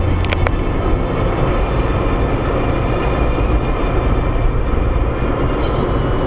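Steady road and engine noise heard inside a car cabin at motorway speed, with a few sharp clicks just after the start.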